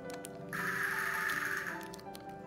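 A small plastic zip bag rustling for about a second as a knurled brass tremolo part is drawn out of it, over background music.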